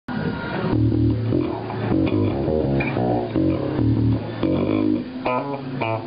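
Schecter Stiletto Elite 5 five-string electric bass played solo, a quick riff of many short plucked notes with deep low tones, with a few sharper, brighter notes near the end.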